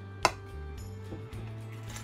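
Background music with steady held notes, and about a quarter second in, a single sharp clink of a metal spoon knocking against the stainless steel mixing bowl.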